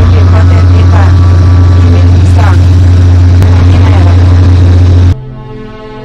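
Loud, steady low rumble inside the cab of a heavy mining machine, with a woman talking into a two-way radio handset over it. The rumble cuts off abruptly about five seconds in, leaving background music.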